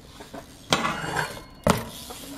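A BMX bike's peg slams onto a concrete ledge about two-thirds of a second in and grinds along it for most of a second in a feeble grind. Near the end comes a sharp crack as the bike comes off the ledge with a hard 180 and lands on the flat.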